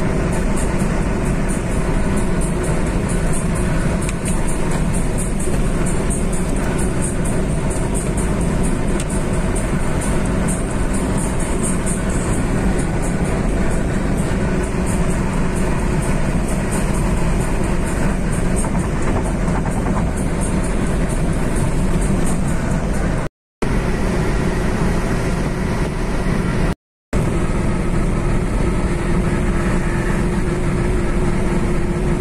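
Steady road and engine noise inside a car cruising on a concrete highway, mixed with music. The sound cuts out twice briefly about three-quarters of the way through.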